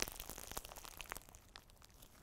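Crunchy glitter slime (mermaid scale slime) being squeezed and squished between the hands, giving faint, scattered crackles and clicks.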